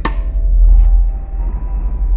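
Background music: a deep bass swell that eases off near the end, with faint held notes above it.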